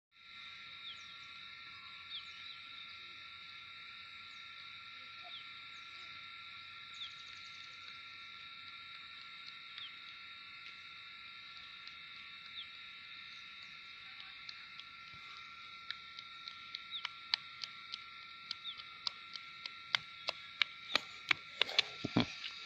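A steady high-pitched chorus of calling animals, with short falling chirps every second or two. From about fifteen seconds in, sharp clicks come more and more often, about two a second near the end.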